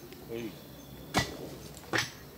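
Two sharp metallic knocks of steel tools and gear striking the rails and fastenings during sleeper replacement: a loud one about a second in and another near the end.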